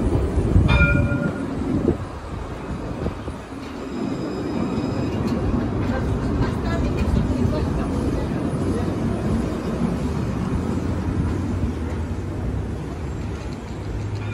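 Alstom Citadis tram pulling away from the stop and running past: a short beep about a second in, then a steady low hum of motors and wheels on the rails.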